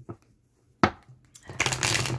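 Tarot cards being handled and shuffled: a sharp tap of the deck a little under a second in, then a dense rustle of cards sliding over each other near the end.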